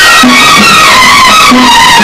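Instrumental interlude of a 1970s Hindi film song: the orchestra's melody slides up and down, with a short repeated bass figure underneath.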